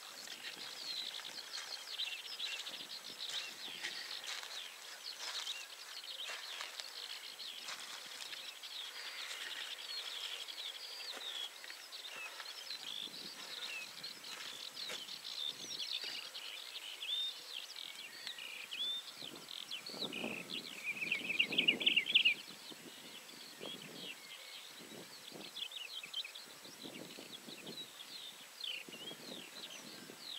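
Wetland bird chorus: many birds calling and singing at once in short overlapping chirps and trills, with one louder rapid trill about twenty seconds in.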